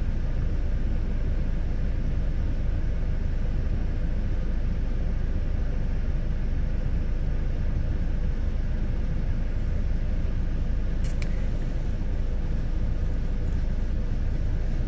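Steady low rumble of a car heard from inside the cabin, with a brief pair of sharp clicks about eleven seconds in.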